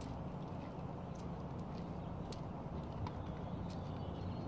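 Footsteps of a person walking on asphalt alongside a puppy on a leash: faint, irregular taps over a steady low rumble.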